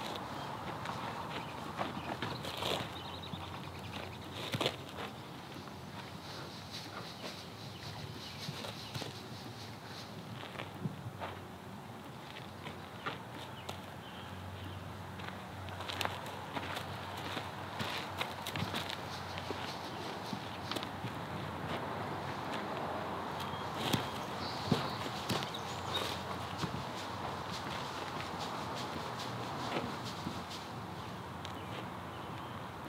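Irregular footsteps of a horse and a person on a gravel paddock, with a few louder steps near the end, over a steady faint background hiss.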